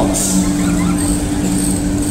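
An old car's engine running at steady revs as it drives along the straight.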